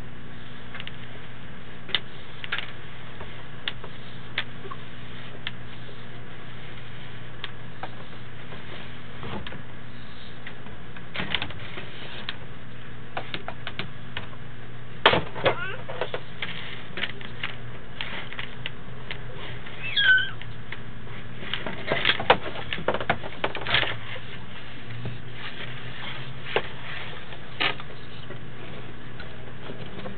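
Sewer inspection camera rig: a steady low electrical hum with scattered clicks and knocks as the push cable and camera head are worked through the pipe. The clicks come in clusters about halfway through and again a little later, along with a brief squeak.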